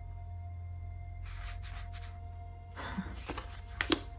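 Postcards being handled on a table: two short paper rustles as a card is moved, then a light tap near the end as it is laid down, over faint background music.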